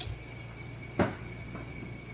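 A single sharp knock about a second in as an aerosol spray paint can is put down on a table, over a steady background hum.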